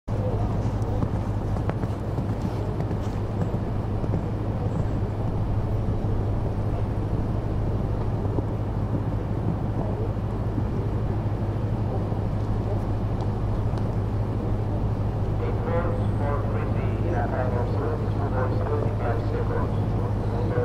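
Outdoor background noise with a steady low hum throughout. A distant voice talks from about three-quarters of the way in.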